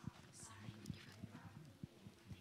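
Near silence: quiet room tone with faint, irregular low knocks and bumps.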